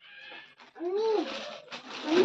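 A small child's short wordless vocal sound, rising and then falling in pitch, about a second in, over the crinkle of a plastic bag being handled.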